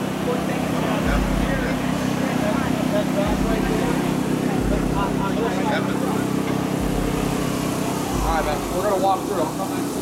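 Background chatter of people over a steady low mechanical hum, like a running engine or generator.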